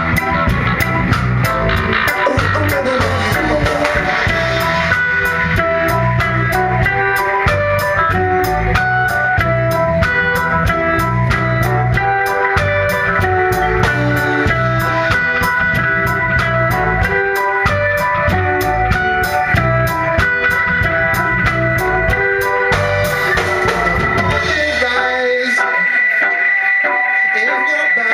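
Live reggae band playing an instrumental passage: electric guitar, bass guitar, keyboard and a drum kit with a steady hi-hat beat. About three seconds before the end the bass and drums drop out, leaving guitar and keys.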